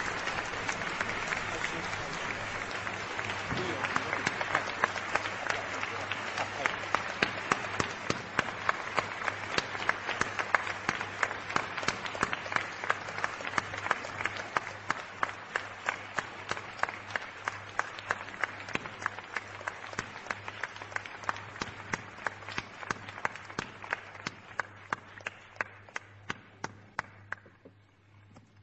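A large hall audience applauding. From a few seconds in, the clapping settles into an even beat of about two to three claps a second, then thins and dies away near the end.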